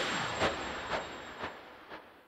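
Outro sound sting under the end card: a noisy swell fading away, with four soft hits about half a second apart.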